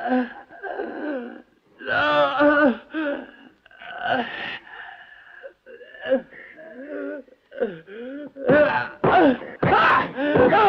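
An injured man groaning and moaning in pain, in strained, drawn-out cries with gasping breaths between them. The loudest cries come about two seconds in and again near the end.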